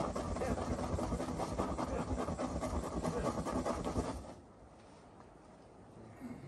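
Dense rumbling, rustling noise on the camera's microphone, stopping suddenly about four seconds in and leaving quiet outdoor ambience.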